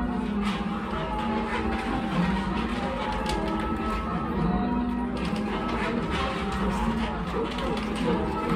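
A ring of eight church bells rung full-circle in call changes, heard from the ringing room below: the bells strike one after another in a steady round, each note ringing on into the next.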